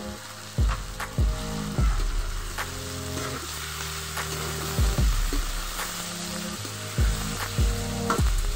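Chicken pieces sizzling as they sauté in a wok and are stirred, under background music with held low notes and a beat of sharp hits.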